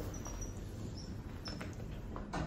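Elevator doors sliding shut over a low steady hum, with a few short high squeaks and faint clicks spread through the two seconds.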